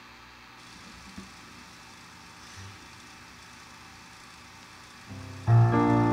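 Faint room tone, then about five seconds in a stage keyboard starts playing sustained piano chords, much louder than what came before.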